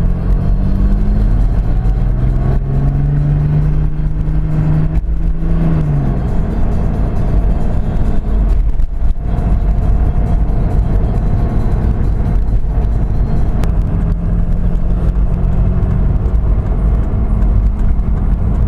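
Older Mercedes-Benz diesel engine and road noise heard from inside the cabin while driving. The engine climbs in revs for a few seconds, then drops back about six seconds in, as the automatic gearbox shifts up, and runs on steadily.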